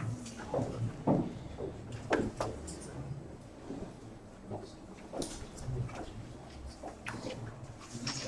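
Room noise of a crowded meeting room: low, indistinct voices with scattered clicks and knocks of objects and furniture being handled.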